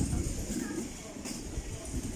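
Indistinct voices of people talking nearby, over a steady low rumble.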